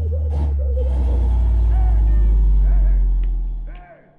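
A car engine's low, steady drone, swelling in loudness and then cutting off shortly before the end, with people's voices over it.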